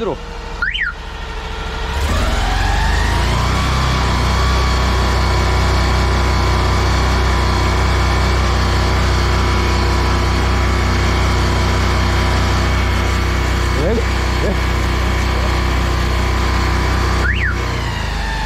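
Engine-driven high-pressure washer (drain jetter) running with its water jet spraying: a steady hiss over the engine's low drone that builds up about two seconds in and cuts off shortly before the end. A short high chirp comes just before it starts and again as it stops. The engine is running smoothly, without shaking.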